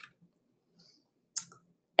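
Near silence broken about two-thirds of the way through by a single short click, likely a computer mouse button.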